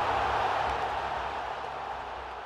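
Tail of an end-card logo sound effect: a steady hiss with a low rumble, fading slowly away.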